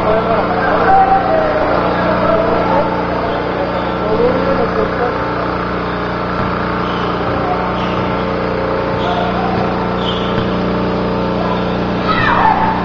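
Indistinct voices of players and spectators around a basketball court, over a steady mechanical hum.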